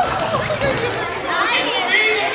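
Many children's voices chattering and calling out at once, overlapping into a steady hubbub in a large gym.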